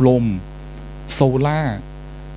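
Steady electrical mains hum, a low buzz with a ladder of even overtones, heard plainly between two short spoken words.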